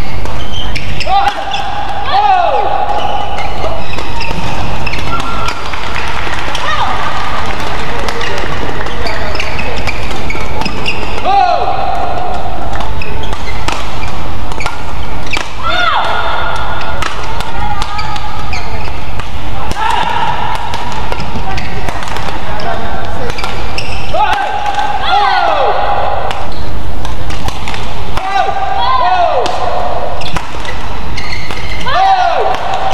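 Several badminton rallies: rackets striking the shuttlecock in sharp, quick hits, and players' shoes squeaking on the court mat in short falling squeals.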